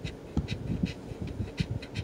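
A copper coin scratching the coating off a paper scratch-off lottery ticket in short, irregular scrapes, several a second.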